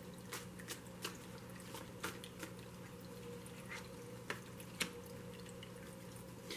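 Tarot cards being handled and a card laid on a cloth-covered table: faint, short clicks, several in the first two seconds and a few more later, over a low steady hum.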